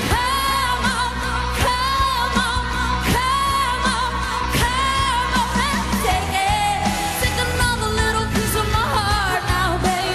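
A female singer performs live with a pop-rock band, holding several long notes that waver at their ends over steady drums and bass.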